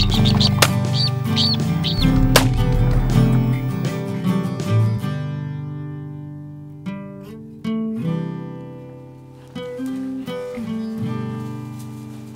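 Background music with sustained plucked-string notes that thin out and grow quieter after about five seconds, with a few short high chirps in the first two seconds.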